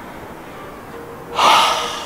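A person's loud, breathy gasp about one and a half seconds in, fading over half a second, after a low steady hiss.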